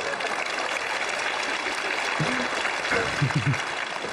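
Studio audience applauding and laughing. A voice cuts in briefly in the second half.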